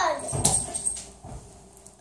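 A German shepherd dog giving a short, sharp bark about half a second in.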